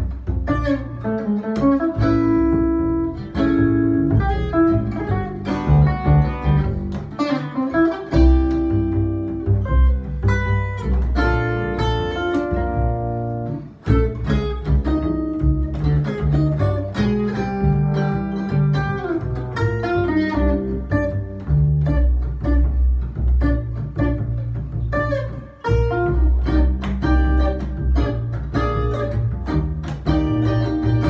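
Jazz duo in a Latin jazz feel: a Gibson archtop guitar plays melodic lines and chords over a double bass plucked pizzicato.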